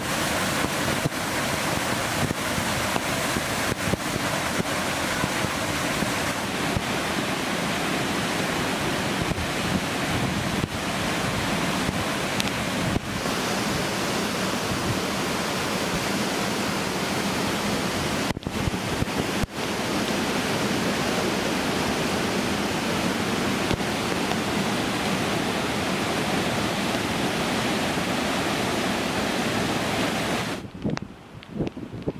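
Muddy floodwater rushing and cascading over boulders in a steep rocky channel, a steady loud rush of water with two brief dips about two-thirds of the way through.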